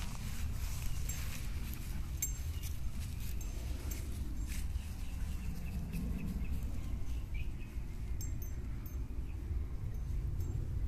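Quiet outdoor ambience picked up by a phone microphone: a steady low rumble, typical of light wind on the mic, with a few faint high ticks or chirps about two seconds in and again near the end.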